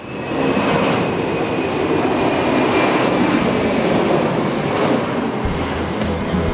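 Jet airliner's engines, a loud steady noise that fades in at the start and holds. Music comes in underneath near the end.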